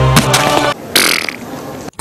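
A man burps: a short throaty sound followed by a breathy rush of air lasting about half a second, as background music cuts off. It is the breath that the ad casts as foul bad breath.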